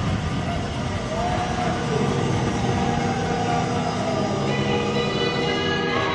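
Hockey arena crowd noise right after a goal, with steady sustained tones over it. A brief gliding tone comes in about a second in, and a higher set of tones joins about four and a half seconds in.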